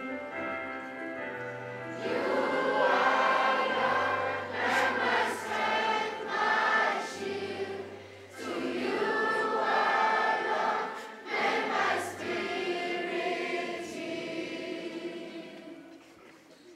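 A choir of schoolchildren singing a hymn together, in long phrases with short breaks between them.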